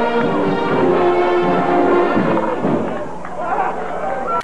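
A marching brass-and-percussion band (fanfarra) playing loudly, held brass notes over marching drums with heavy drum hits.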